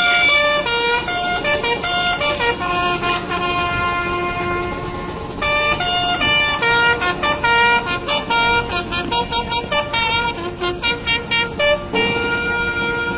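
Military brass band playing a ceremonial tune: held brass notes that step in pitch from one to the next, turning to shorter, quickly repeated notes in the second half.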